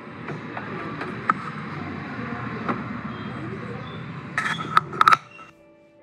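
Plastic headlight assembly being handled and worked into place in a car's front end: a steady rustle of plastic, with a few sharp clicks and knocks and a quick cluster of them near the end. The sound then cuts off suddenly and faint music follows.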